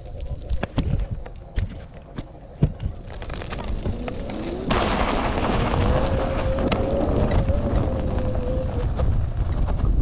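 A few sharp knocks, then the Floatwheel ADV Pro's hub motor whines, rising in pitch as the board accelerates and holding steady under heavy load on a steep dirt climb. From about halfway through, a loud rush of tyre noise on dirt and wind covers it.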